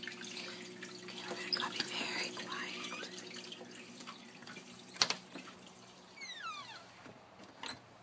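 A low steady hum under handling rustle, then a sharp click about five seconds in, a squeak sliding down in pitch, and another click near the end: a door being unlatched and swung open on its hinges.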